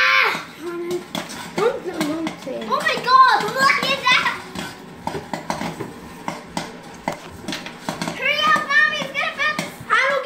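Young children's high voices calling out, over a scattered run of sharp clicks from corn kernels popping in a tabletop kettle popcorn machine. The clicks come irregularly and are most noticeable in the quieter middle stretch between the voices.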